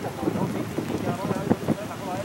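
Rain falling, with drops tapping irregularly on a nearby surface.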